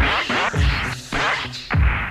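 Hip hop beat with a deep, regularly recurring kick drum, and scratch-like sliding sounds over it.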